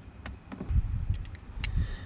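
A few small clicks and low knocks from the battery charger's clip-on clamps and cables being handled on the car battery's leads.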